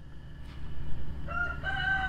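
A rooster crowing: a short opening note a little past halfway, then one long held call, over a steady low rumble.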